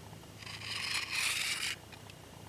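Waxed linen thread being pulled out through the tensioner and needle of a Speedy Stitcher sewing awl: a steady, high scraping hiss lasting a little over a second.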